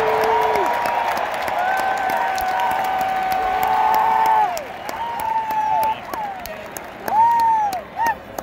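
Large stadium crowd cheering and applauding. Drawn-out whoops rise, hold and fall over the din. The roar dies down a little past halfway, and a couple of single arching whoops stand out near the end.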